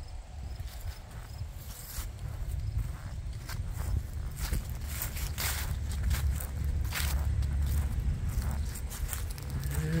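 Wind rumbling on the microphone, with footsteps through grass and dry leaves and scattered rustles and knocks from handling.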